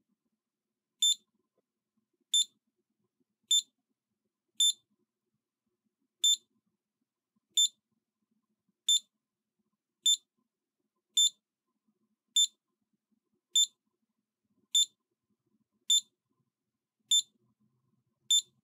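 Scantronic SC-800 alarm keypad beeping once for each key press while its programming locations are stepped through: about fourteen short, high-pitched beeps, roughly one every 1.2 seconds.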